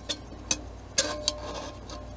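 Folding wire handles of a titanium camping pot clicking against the pot as they are swung out, four light metal clicks about half a second apart, one ringing briefly.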